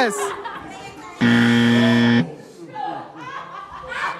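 A flat, steady buzzer tone lasting about a second, starting just over a second in and cutting off sharply. It sounds like a game-show 'wrong answer' buzzer sound effect, here marking a 'pass' verdict.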